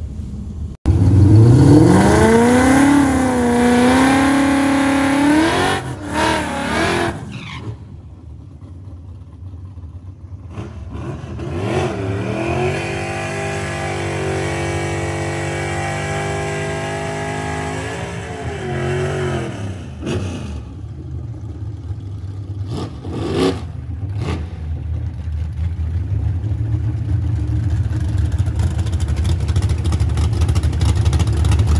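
Supercharged Ford Coyote 5.0 V8 of a drag-race Ford Fairmont revving up about a second in and held at high revs for several seconds, then dropping back. Around the middle it is held high again for about seven seconds, rising at the start and falling at the end. Near the end it settles into a low engine note that grows steadily louder.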